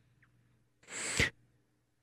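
A man's audible breath about a second in, a short breathy sound lasting about half a second that ends in a brief low voiced sound; otherwise near silence.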